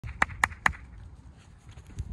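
Three quick, sharp hand claps, about a fifth of a second apart, given to call a young spaniel pup in to the handler.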